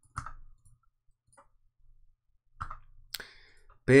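A few scattered computer mouse clicks, with the sharpest click about three seconds in.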